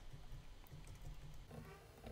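Near silence: faint room tone with a low hum.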